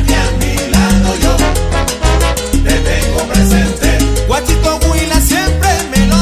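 Salsa music playing loud and unbroken, with a repeating bass line under dense percussion and no words sung.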